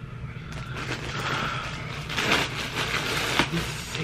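Rustling and crinkling of a clear plastic garment bag and the clothing in it being handled. It starts softly about half a second in and turns into louder, irregular crinkles from about two seconds in.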